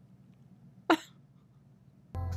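A single short cough about a second in; the rest is near silence.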